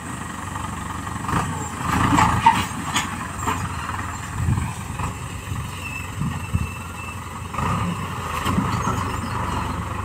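Farm tractor engine running steadily as it pulls a disc harrow through the field, with a few knocks and clatters between about one and three seconds in.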